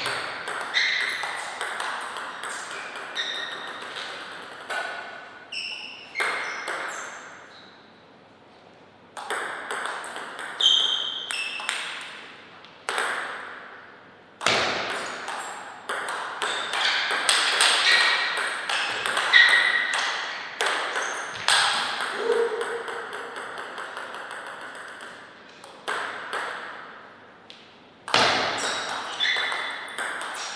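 Table tennis rallies: the ball clicks sharply off the bats and the table in quick back-and-forth succession. Several points are played, with short pauses between the rallies.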